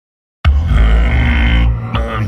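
Silence, then about half a second in a loud, deep film-score drone cuts in suddenly, heaviest in the bass.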